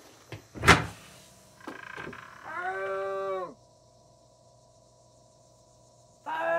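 A sharp thump about a second in, then a long creak that drops in pitch at its end, like an old refrigerator door swinging open on a worn hinge, followed by a faint steady hum.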